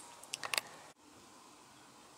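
Quiet background hiss, with a couple of brief soft noises about half a second in and a sudden drop to even fainter hiss about a second in.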